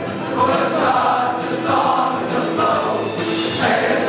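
A large group of voices singing a song together in unison, choir-style, without pause.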